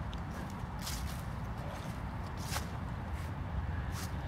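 Footsteps on a path covered with dry fallen leaves, with a few sharp crackles of leaves underfoot over a steady low rumble.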